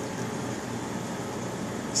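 Steady, even rush of background noise from a running reef aquarium setup, its pumps and circulating water.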